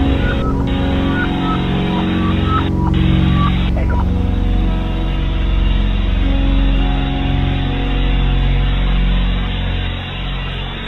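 Ambient music of sustained low drone tones laid over shortwave radio receiver hiss, with a few short high blips in the first four seconds.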